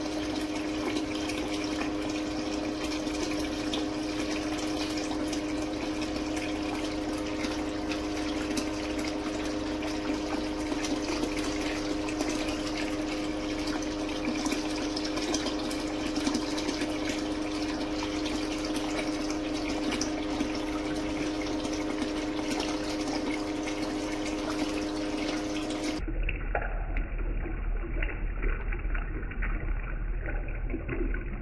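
Water running through a small cleanup sluice, fed by a pump that hums steadily. Near the end the sound changes abruptly to a duller, lower rumble.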